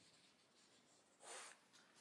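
Near silence: room tone, with one brief soft hiss a little past the middle.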